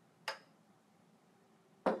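A glass beer bottle being set down on a wooden table: one sharp knock near the end. A lighter tap comes about a third of a second in.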